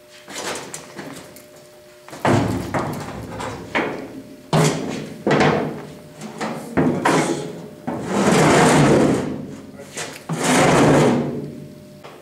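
South Bend 7-inch shaper being lifted onto and slid across a steel diamond-plate trailer deck: several knocks and clanks of metal on metal, then two longer scrapes in the second half as the machine is slid into place.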